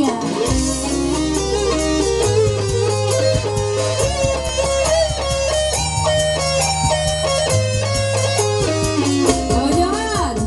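Live dangdut band playing an instrumental passage: a stepping lead melody over held bass notes, with regular kendang hand-drum strokes.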